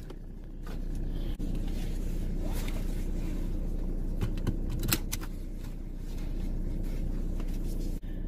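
Car engine running at idle, a steady low hum heard inside the cabin, growing louder just under a second in. A couple of light clicks come about halfway through.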